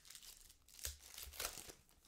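Foil wrapper of a Panini Contenders basketball card pack being torn open and crinkled, with two louder crackles near the middle.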